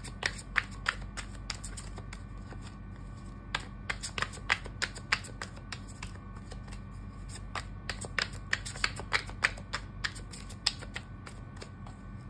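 Tarot deck being shuffled by hand: irregular runs of sharp card clicks and taps, bunched about half a second in, around four to five seconds in, and again from about eight to eleven seconds in.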